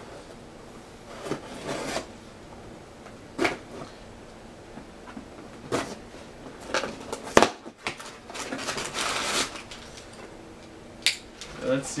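Knife blade slitting packing tape on a cardboard shipping box, with scattered scrapes and rustles of cardboard and one sharp knock about two-thirds of the way through.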